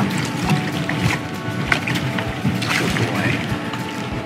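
Irregular cracking and crunching clicks from an American crocodile biting down on a rabbit it has just taken, its head at the water's surface.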